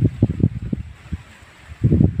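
Wind buffeting the microphone: irregular low rumbling gusts, loud in the first second, dropping to a lull, and rising again near the end.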